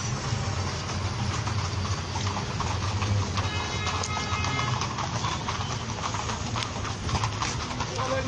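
Several horses' hooves clip-clopping on a paved road amid busy street noise from traffic and voices, with music playing.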